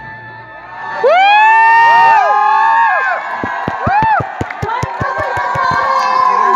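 Audience cheering, with many voices whooping and shrieking from about a second in, rising and falling in pitch, then a run of quick sharp knocks in the second half.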